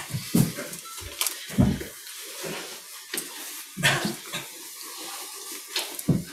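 Scattered light knocks and clatter, about half a dozen at irregular intervals, as objects are handled.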